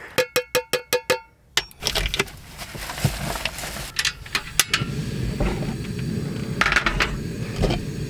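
A quick run of about ten ringing clicks opens, then metal cookware clinks as a skillet of soup is set on the grate of a portable butane stove and its lid handled. From about five seconds in, a steady low rushing noise from the lit burner runs under the clinks.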